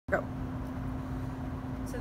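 Steady low background rumble with a constant faint hum, room noise in a large room. A short pitched sound right at the start is the loudest moment.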